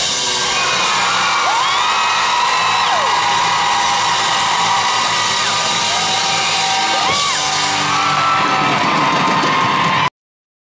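Live rock band with guitars and drums playing loudly while the audience whoops and screams over it, with long rising-and-falling whoops a couple of seconds in and again about seven seconds in.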